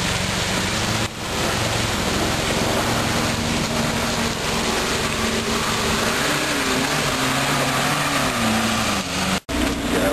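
Off-road 4x4's engine working under load as it climbs out of a muddy rut, its pitch wavering up and down in the second half, over a steady hiss.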